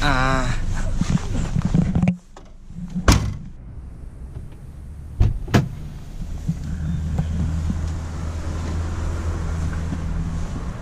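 Car doors shutting: one loud slam about three seconds in and two more a couple of seconds later. After that comes the steady low hum of the car's engine running.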